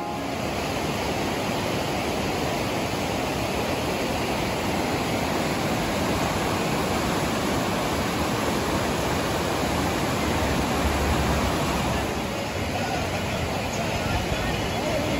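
Fast-flowing mountain river rushing over rocks: a steady, even hiss of white water.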